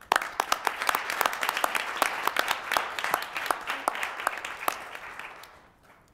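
Applause from a group of people clapping together. It starts suddenly and fades out after about five seconds.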